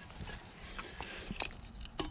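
Faint scraping and a few light clicks and knocks from a tined digging fork working into dirt.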